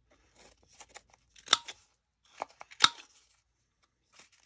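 Handheld corner rounder punch cutting two corners off a layered paper card: two sharp crunching snaps about a second and a half apart, each with a brief metallic ring, with paper rustling between.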